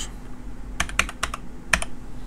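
Computer keyboard being typed on: a quick run of about six key clicks about a second in, typing a short word.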